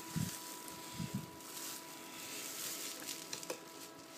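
Plastic packaging crinkling and rustling as it is handled, with two soft low thumps near the start and about a second in.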